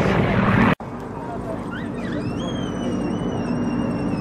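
Yak-52 radial engines and propellers of a formation flypast, loud at first and cut off abruptly just under a second in. After that, more distant aircraft engine hum slowly grows, with a thin high whistle held for about two seconds near the end.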